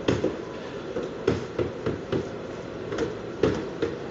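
About ten sharp, irregular knocks and taps of a car's plastic rear bumper cover being struck and pressed into place by hand, over a steady hiss.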